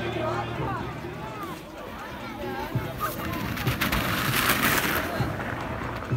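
Distant voices of people calling out across a snow-tubing hill, then about two seconds of loud crackling, rushing noise about three seconds in.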